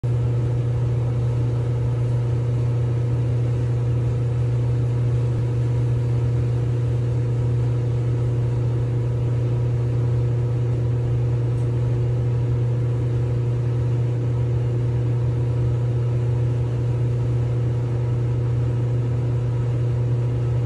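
Clothes dryer running: a steady low hum from its motor and blower, with a constant rushing noise over it.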